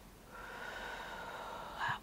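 One long, deep inhale through the nose, lasting about a second and a half, with a faint whistle: a slow cleansing breath drawn in.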